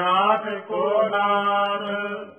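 A man chanting lines of Gurbani scripture in a drawn-out recitation tone: santhia, verses recited and repeated for correct pronunciation. Syllables glide up and down over a steadily held pitch.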